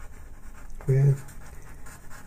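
Faber-Castell Pitt pastel pencil scratching lightly across pastel paper as colour is laid down in small, quick strokes.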